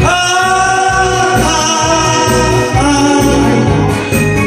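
A man sings a Korean trot song into a microphone over accompaniment with a steady beat. He slides up into a long held note at the start, then sings on.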